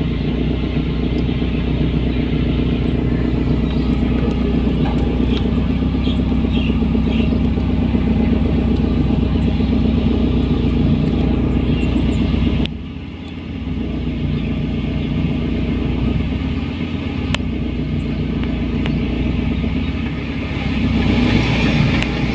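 Steady, loud diesel engine drone of a New Holland 8060 tracked rice combine harvester travelling along a road close by, mixed with the engine of the vehicle following it. There is a click and a brief drop in level about 13 seconds in.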